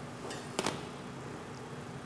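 Low room tone with two light clicks a little over half a second in, the second sharper: a dish or utensil tapping a stainless steel mixing bowl as ingredients are added.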